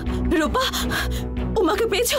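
Dramatic TV-serial background music: short wordless sung vocal phrases with vibrato over a sustained low drone.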